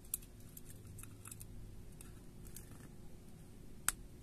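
Metal tweezers prying at a smartphone's coaxial antenna cable connector on the circuit board: faint small clicks and scrapes, with one sharp click near the end.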